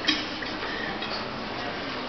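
A sharp click just after the start, then faint room noise with a few light ticks.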